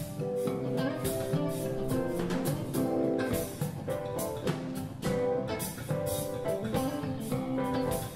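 Live band playing: drum kit keeping a steady beat with cymbals, electric guitar, bass guitar and keyboard, with held melody notes over the top.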